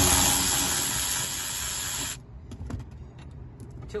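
Cordless ratchet running on a seat-mounting bolt, undoing it, then cutting off about two seconds in; a few light clicks and knocks follow.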